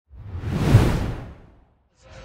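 A whoosh transition sound effect that swells, peaks just under a second in and fades away by about a second and a half.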